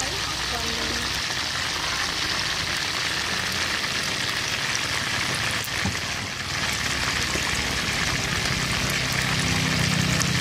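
Whole chickens deep-frying in a wide steel wok of hot oil: a steady sizzling and bubbling hiss.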